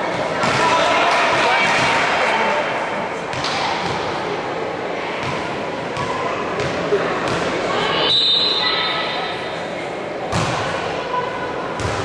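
Voices of spectators and players calling and shouting in a reverberant sports hall, with several sharp thumps of a volleyball being struck during a rally.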